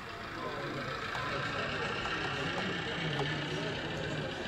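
DCC sound from a model industrial diesel shunter: a small engine running steadily at low revs with a faint wavering hum, played through the locomotive's onboard speaker.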